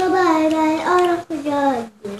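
A child singing off-camera in long held notes, the last one sliding down in pitch near the end.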